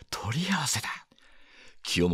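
A man's voice reading aloud in Japanese: one short spoken phrase, then a brief quiet pause before the reading goes on.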